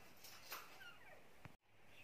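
Near silence: faint room tone with a few faint, short falling chirps. It drops out to dead silence for a moment about one and a half seconds in.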